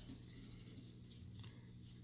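Faint room tone: a steady low hum, with a light click right at the start and a few faint ticks.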